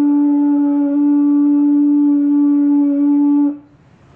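A conch shell trumpet (tabura) blown in one long, steady, unwavering note that stops about three and a half seconds in.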